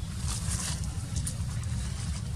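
Steady low rumble, with a few brief rustles in the first half and a short one just past the middle.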